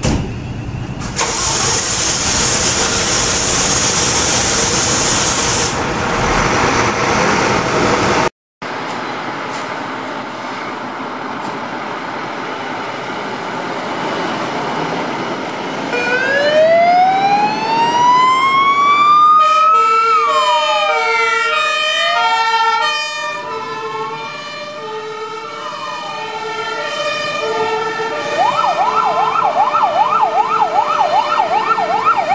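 Scania fire engines pulling out on an emergency call: heavy diesel engine noise with a loud hiss of air for several seconds, then after a cut a siren winds up about halfway through. More sirens join, overlapping in wailing and pulsing two-tone patterns, and near the end one switches to a fast yelp.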